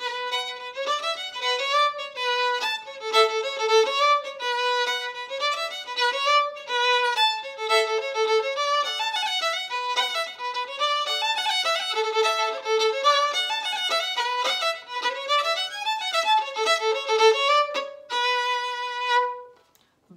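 Solo fiddle playing a quick B minor reel by ear, a fast unbroken run of bowed notes that ends on one long held note shortly before the end.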